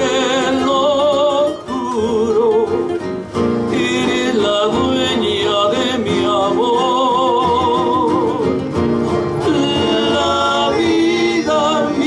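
Live trio performance: three male voices singing together in close harmony with vibrato, over three acoustic guitars.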